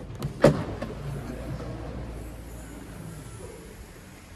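Range Rover Evoque Convertible boot lid being opened: a sharp click of the catch releasing about half a second in, then a low steady hum for about a second and a half as the lid lifts, fading away.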